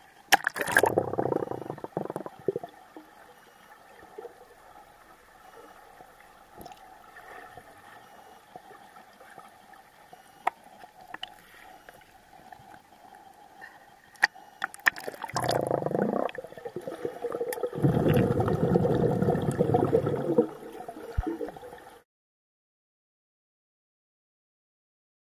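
Pool water splashing, gurgling and bubbling around a swimmer, picked up by a camera in a waterproof case at and below the surface, so the sound is muffled. There is a loud burst of splashing and bubbling at the start and another long one in the second half, with quieter underwater gurgling between. The sound cuts to silence near the end.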